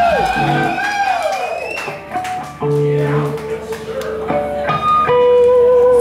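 Electric guitar through a stage amp playing long sustained notes between songs, one bending down in pitch near the start, then a few held notes with short breaks between them.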